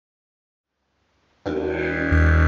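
Silence, then about one and a half seconds in a tiger elm evoludidg, a three-key didgeridoo set to E, starts a low, steady drone rich in overtones.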